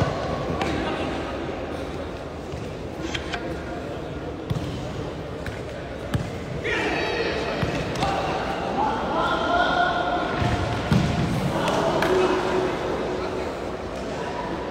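Futsal ball being kicked and bouncing on a hard indoor court, a few sharp impacts that echo in a large hall, among shouts and talk from players and spectators.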